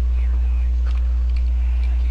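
Steady low hum running under the recording, with a few faint clicks of the plastic Transformers AT-AT toy being handled and turned.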